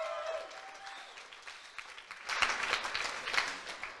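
Audience applauding, with a held cheer at the start and the clapping growing louder about two seconds in.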